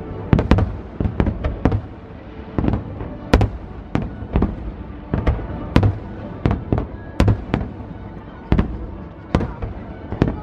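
A fireworks display with aerial shells bursting in a rapid, irregular string of sharp bangs, two or three a second.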